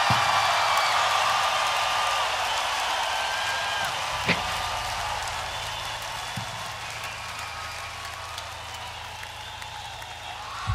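Arena crowd cheering and whistling between songs, the noise dying away steadily. A sharp low thud from the stage comes about four seconds in, followed by a steady low hum, and a softer thud comes a couple of seconds later.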